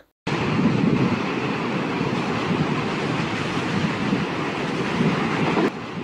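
A steady rushing, rumbling noise without tone or rhythm, starting just after a brief silence and dropping to a lower level near the end.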